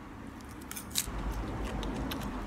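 Mouthful of crisp, crunchy salad leaves bitten off a fork and chewed: a few sharp crunches about three quarters of a second to a second in, then low muffled chewing.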